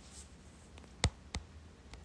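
Two short, sharp clicks about a third of a second apart, about a second in, then a much fainter click near the end, over a faint low room hum.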